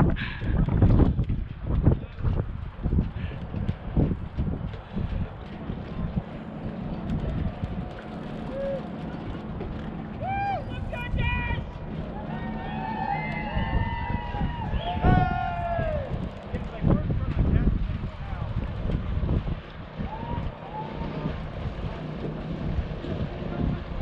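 Wind rumbling and buffeting on the microphone, gustiest in the first couple of seconds. Indistinct voices come through in the middle, about ten to sixteen seconds in.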